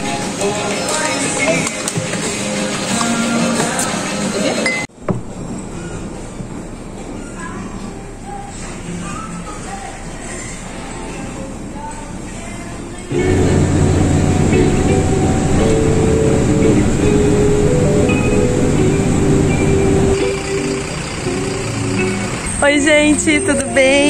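Voices and the clink of dishes and cutlery, with music. The sound changes abruptly twice, and it is quieter in the middle and much louder over the last third.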